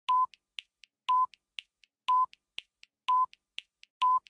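Countdown time-signal sound effect: a short, steady-pitched beep once a second, four times, with three faint quick ticks between each beep, counting down the last seconds to the hour.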